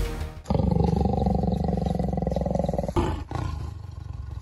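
Big cat roaring: one long rough roar begins about half a second in as background music cuts off, followed by a shorter roar near the three-second mark that fades away.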